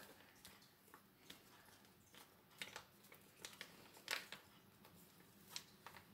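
Near silence with a few faint rustles and ticks from a small paper paprika sachet being handled and shaken over a bowl.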